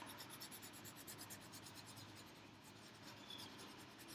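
Faint, steady scratching of a colored pencil shading on paper.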